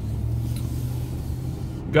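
Pickup truck driving, heard from inside the cab: a steady low engine hum with road rumble under it.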